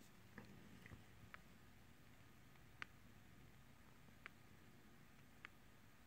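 Near silence with about six faint, irregular ticks of an Adonit Pixel stylus tip touching down on an iPad's glass screen as lines are drawn.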